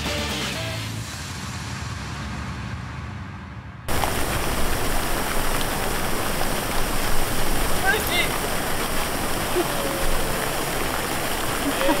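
Outro music fading out. Then, after a sudden cut about four seconds in, a fountain's water jets and spray splash steadily into its basin.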